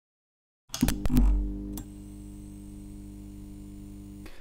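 Short logo intro music sting. After a moment of silence come a few sharp hits with a deep bass hit, which settle into a steady held synthesizer chord.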